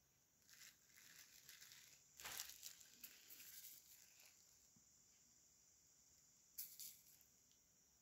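Near silence with faint handling rustles as hands work over a small bowl of nonpareil sprinkles. The rustling is loudest about two seconds in, with one more brief rustle near seven seconds.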